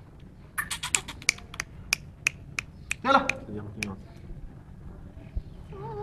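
A quick run of sharp clicks, then slower single clicks about three a second, with a short voice sound about three seconds in.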